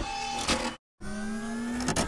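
Electronic intro sound effects: sustained tones gliding slightly upward, cut off by a sudden drop to silence just before a second in, then resuming.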